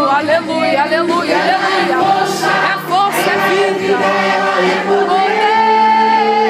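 A church congregation singing a Portuguese gospel chorus together, many voices overlapping, with a man's voice over a microphone among them.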